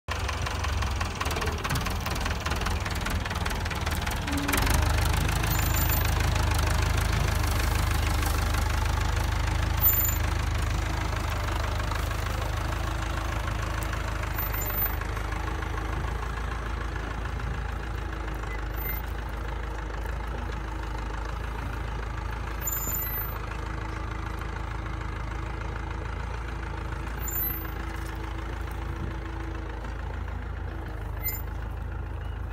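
Farm tractor engine running as it hauls a trailer loaded with wheat straw, growing louder about five seconds in and then slowly fading as the tractor moves away.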